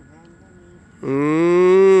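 A man's long drawn-out vocal exclamation, a held 'eeh', starting about halfway through and lasting about a second with a slight rise in pitch. Faint murmured speech comes before it.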